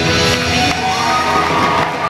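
Live rock band with drums, electric guitar and saxophone holding out the ending of a song, with the audience cheering over it.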